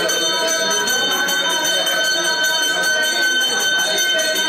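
Temple bells ringing continuously in a steady sustained ring, with people's voices underneath.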